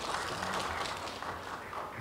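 Audience applause: a steady patter of clapping that tapers off slightly near the end.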